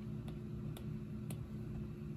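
A stylus tip tapping on an iPad's glass screen, three light clicks about half a second apart, over a faint steady hum.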